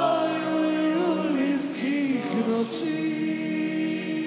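Several men's voices singing a slow song in harmony, holding long notes, with a few sung words and pitch slides in the middle before settling on another held chord.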